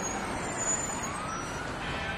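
Steady low rumble of vehicle and street traffic noise, with a faint tone that rises and then levels off about halfway through.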